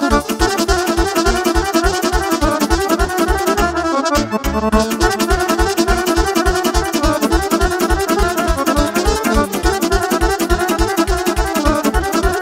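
Live instrumental dance music on a Roland digital accordion and a saxophone, the accordion carrying a fast melody over a steady driving beat.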